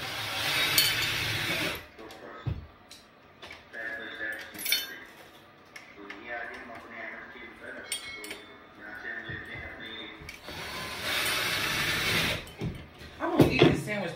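A small power tool runs in two bursts of about two seconds each, one at the start and one about ten seconds in, with faint voices in between.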